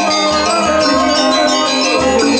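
Balinese gamelan angklung ensemble playing tabuh kebyar: bronze-keyed metallophones struck with mallets in a dense, ringing run of notes, with a low pulse underneath.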